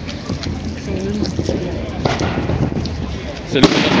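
A single sharp explosive bang about three and a half seconds in, over a background of crowd voices and wind.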